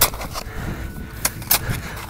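Two avalanche shovels digging into snow, the blades chopping and scraping with a few sharp clicks scattered through.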